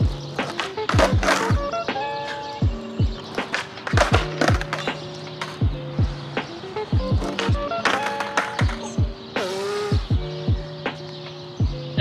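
Background music with a steady beat, over the clatter of a skateboard deck and wheels hitting asphalt on missed frontside flip attempts.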